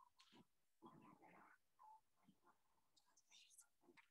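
Near silence: faint room tone with a few faint clicks and a brief faint murmur about a second in.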